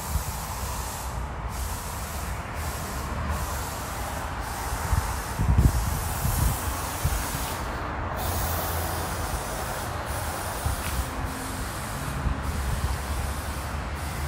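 Steady outdoor background hiss with a low rumble underneath, and a few brief low bumps about five to six seconds in.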